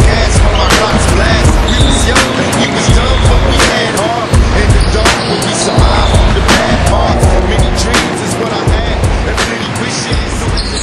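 Live sound of an indoor basketball game on a wooden gym floor: irregular sharp knocks of the ball and feet on the boards and short sneaker squeaks, over heavy on-and-off rumble on the camera's microphone.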